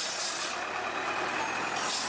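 In-shell peanuts being stirred with a metal spatula in an iron wok of hot roasting sand: a rattling swish right at the start and another near the end, over a steady hum of street traffic.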